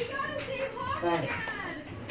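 Young children's voices: high-pitched chatter and calls of children playing.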